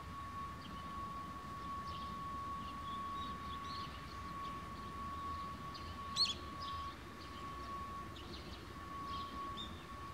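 Faint outdoor ambience: a steady, thin high-pitched tone under scattered short bird chirps, with one sharper, louder chirp about six seconds in.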